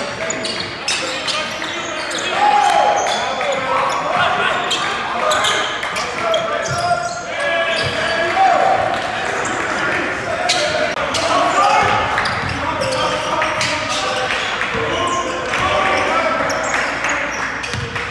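Live game sound on an indoor basketball court: a basketball bouncing on the hardwood with repeated short thuds, mixed with players' and coaches' voices calling out.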